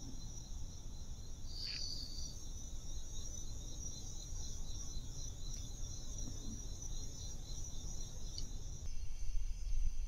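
Crickets or similar night insects chirring: a steady high-pitched drone with a regular pulsing trill beneath it, over a low rumble on the microphone. The sound shifts a little near the end.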